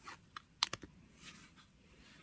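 Light clicks and taps of tweezers and fingertips on a frosted plastic box lid as a sticker is set down and pressed on, with a quick cluster of clicks a little past half a second in.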